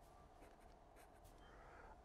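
Faint scratching of a marker pen writing a word on paper, barely above near silence.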